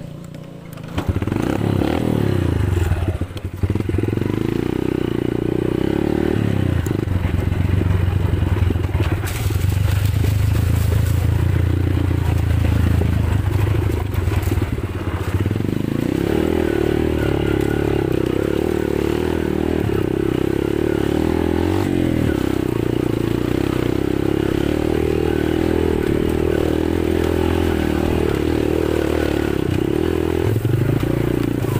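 Yamaha motorcycle engine running under way, revving up about a second in, then holding a steady note whose tone shifts as the throttle changes.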